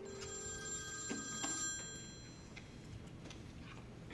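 Mobile phone ringtone: a steady electronic ring of several high tones sounding for about two seconds, then stopping as the call is answered.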